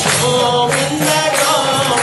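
Devotional kirtan: a lead voice chanting a mantra through a microphone, with jingling metal percussion keeping a steady beat.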